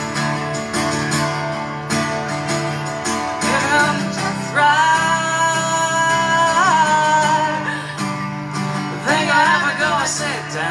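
Live acoustic performance: an acoustic guitar strummed steadily under a man's voice, which holds one long sung note with a brief bend in pitch a little past the middle, then comes back with another short phrase near the end.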